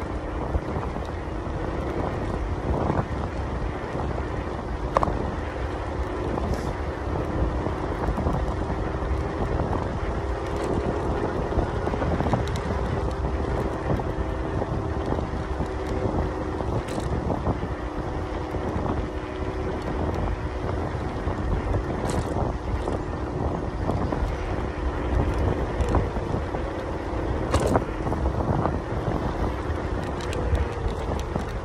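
Zero 10 electric scooter riding along a tarmac path. Wind rushes over the microphone and the tyres rumble, under a faint steady hum from the hub motor that drifts slowly in pitch. There are a few sharp knocks from bumps along the way.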